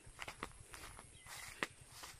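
Faint footsteps with a few short scattered clicks, the sharpest about a second and a half in.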